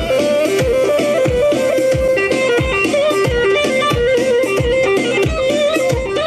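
Live band playing Kurdish dance music: a quick, ornamented lead melody over a steady, heavy drum beat.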